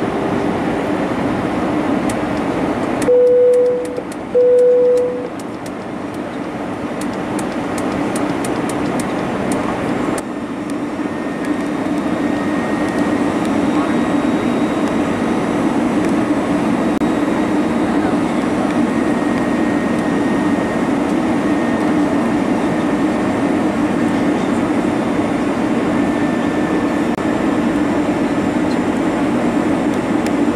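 Airbus A320 cabin noise on approach: the steady hum and rush of its CFM56-5A1 engines and the airflow. Two short, loud beeps about three and four and a half seconds in.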